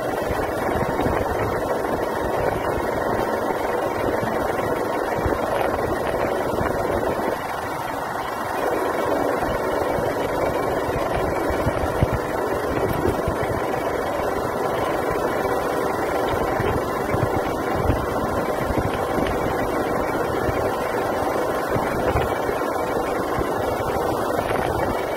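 Wind buffeting the microphone of a moving motorcycle, over the steady sound of its engine and tyres on the road, with a brief lull about seven seconds in.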